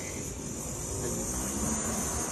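Outdoor ambience: a steady, high-pitched insect drone over a low rumble.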